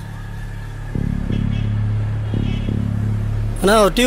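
A steady low hum starts suddenly about a second in and holds on one pitch, and then a man's voice comes in near the end.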